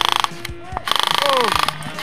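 Airsoft electric rifle firing on full auto: a fast, even rattle of shots in three bursts, breaking off briefly twice. A short falling vocal exclamation comes during the first break.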